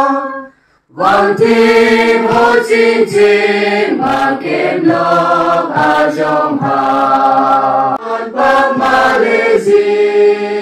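A church congregation of men and women singing a hymn together, holding long notes that change every half second or so. The singing breaks off briefly just before a second in, then resumes.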